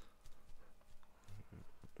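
A pause in speech: faint, scattered clicks over quiet room tone.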